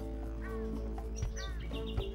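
Background music of sustained held notes, with a few short bird chirps over it: one about half a second in and one about a second and a half in.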